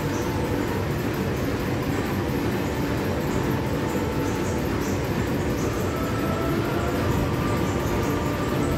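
Large vintage stationary engine running steadily: a continuous dense mechanical rumble and clatter.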